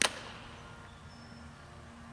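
A pitched softball smacks into the catcher's mitt with a single sharp pop right at the start, followed by a short fading ring.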